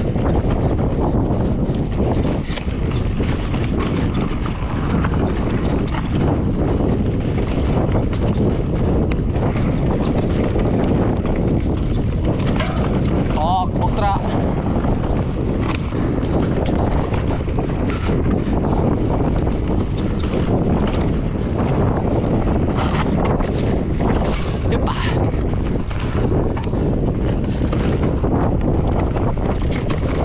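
Berria Mako full-suspension mountain bike descending a rocky dirt singletrack: tyres rolling over stones and the bike rattling and knocking over the rocks, under heavy wind noise on the microphone. A brief wavering squeal about halfway through.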